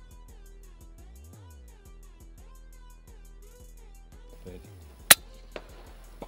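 A single shot from a PCP air rifle firing a .177 H&N slug: one short, sharp crack about five seconds in, followed about half a second later by a fainter click. Background music plays throughout.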